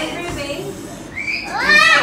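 A young child's voice: one high call that rises and falls in pitch near the end, over a murmur of other people talking.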